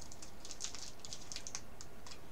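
Faint, quick light clicks and crackles of a small candy and its wrapper being handled in the fingers.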